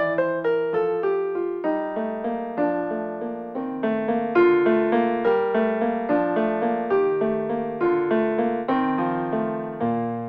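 Solo piano piece played on an electric keyboard: a slow melody of struck notes, each fading away, over low held bass notes. Just before the end a low chord is struck and left to fade.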